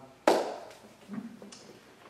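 A single sharp knock of something set down on a tabletop, fading quickly, followed by a couple of faint small clicks.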